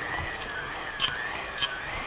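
Handheld electric mixer running in a glass bowl of creamed butter mixture: a steady high motor whine that wavers slightly in pitch, with a few faint ticks of the beaters.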